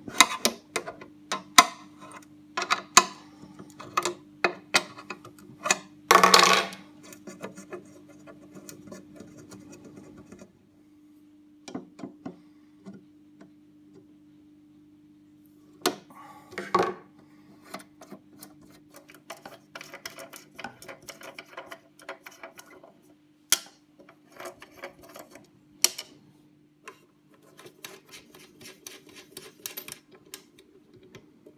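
Small metal clicks and clinks of an open-end wrench working the hex nuts off potentiometer shafts on a metal chassis, with loosened nuts and washers being handled and set down. The loudest is a short rattling clatter about six seconds in, and a steady low hum runs underneath.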